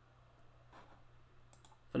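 A few faint computer mouse clicks spread over about two seconds, over a low steady hum.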